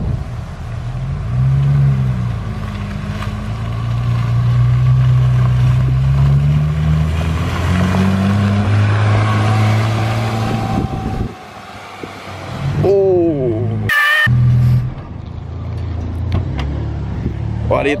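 Porsche 911 GT3 RS 4.0-litre flat-six running at low revs, its pitch rising and falling as the car rolls in over wet pavement with a hiss from the tyres. The engine sound drops away about eleven seconds in. A short higher-pitched sound and a sharp click follow, then the engine is heard running again at low revs.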